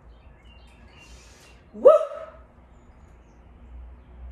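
A woman whoops "Woo!" once, about two seconds in, her voice sweeping up in pitch and then holding briefly, over a faint low hum.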